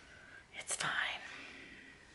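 Paper handling on a spiral planner: a short scrape and rustle about two-thirds of a second in as a sticker sheet slides over the page and a hand moves onto it, followed by a brief soft hiss.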